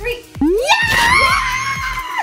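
A woman screaming as she jumps. The scream rises steeply about half a second in and is held at a high pitch for over a second, then falls away.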